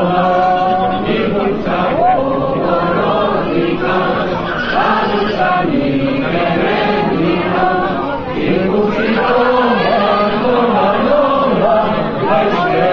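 A large group of people singing a Basque song together in chorus.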